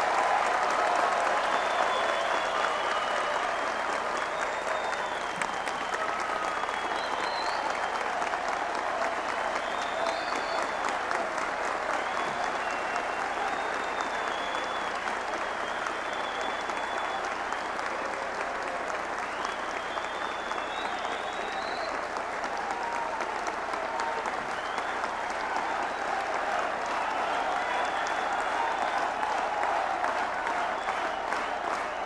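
A large audience applauding steadily, with scattered voices calling out over the clapping.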